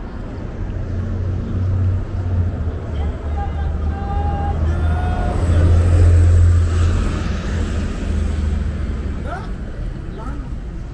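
Street traffic: a low rumble of passing vehicles that swells to its loudest about six seconds in, with faint voices in the background.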